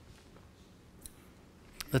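A pause in a man's speech: faint room tone with a single short click about a second in, then his voice starts again right at the end.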